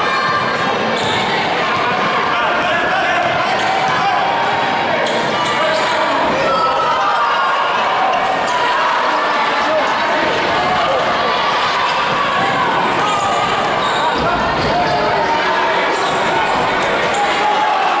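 A basketball dribbled and bounced on an indoor court during play, over steady, overlapping chatter and calls from players and spectators, echoing in a large sports hall.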